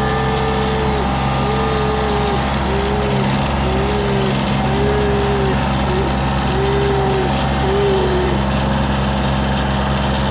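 Kioti CK2510 compact tractor's three-cylinder diesel engine running steadily while its front-loader bucket digs into soil. A short higher whine rises and falls over it, repeating about once a second.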